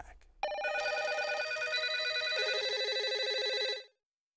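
A trilling telephone ring, starting about half a second in and cutting off shortly before the end, its lower tones stepping down in pitch twice along the way.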